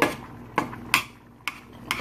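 A metal stirring utensil knocking and clinking against the side of a metal pot while stirring thick gravy, about five sharp, uneven clicks.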